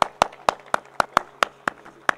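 Hand clapping in a steady even rhythm, sharp distinct claps about four a second.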